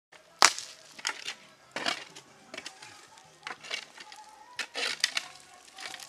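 Stony soil and rocks being dug out and tossed aside by hand: irregular crunches and scrapes of earth and stone, the sharpest about half a second in.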